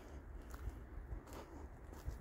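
Quiet outdoor background: a low rumble with a few faint clicks.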